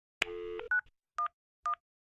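Touch-tone telephone dialing: a brief dial tone, then three short keypad beeps dialing 9-1-1.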